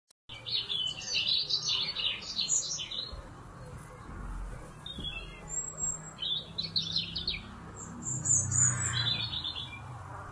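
Birds chirping in rapid clusters of high notes, in three bouts: from the start to about three seconds in, again around six to seven seconds, and once more near the end.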